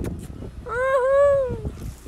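A short "Ah!", then a person's drawn-out, high-pitched squeal of delight lasting about a second.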